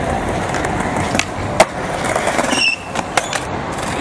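Skateboard wheels rolling over stone paving with a steady rumble, broken by a few sharp clacks, the loudest about one and a half seconds in.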